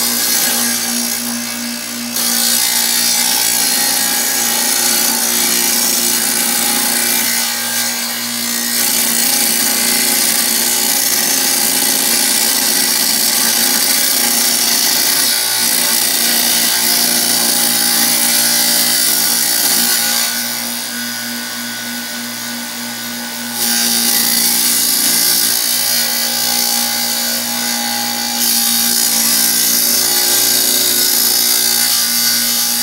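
Kobalt wet tile saw running, its blade grinding through a firebrick as the brick is pushed along the table. The sound steadies, then drops a few times, longest for about three seconds past the two-thirds mark, before rising again.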